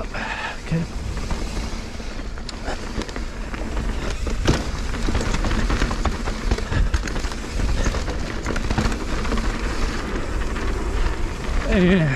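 Mountain bike riding fast down a dirt trail: tyres rolling over dirt, rocks and roots, with frequent short knocks and rattles from the bike over a steady low rumble.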